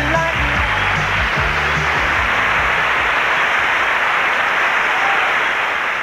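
Audience applauding as a country song ends, with the band's last notes dying away in the first second or so.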